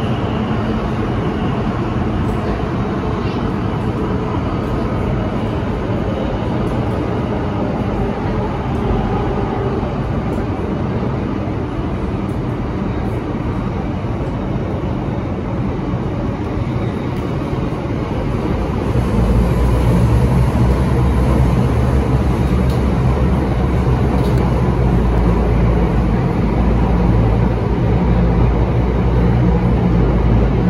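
Inside a Bombardier Movia C951 metro car running between stations: a steady rumble of wheels and running gear. About two-thirds of the way through, the low rumble grows noticeably louder and stays up.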